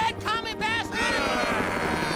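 Helicopter sound effect from an animated war scene, with short pitched chirps in the first second and a falling sweep fading through the second half.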